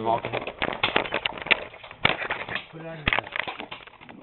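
A rapid, irregular run of clicks and knocks from the camera being handled and swung around, with a short voice near the three-second mark.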